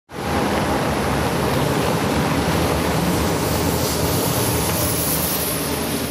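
Snowplow trucks and passing cars on a slushy city road: a steady wash of engine and tyre noise, with a low diesel engine sound underneath.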